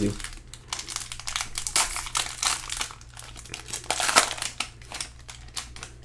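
Plastic wrapper of a Panini Prizm trading-card pack crinkling and tearing as it is opened by hand, an irregular crackle that is loudest about two and four seconds in.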